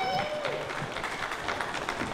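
Wrestling crowd noise in a hall reacting to a move. It opens with the tail of a long held shout that drops away, then settles into a steady murmur of the crowd.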